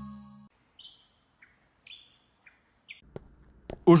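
A music chord fades out, then about five short, high bird chirps, each dropping in pitch. A faint low hum comes in near the end.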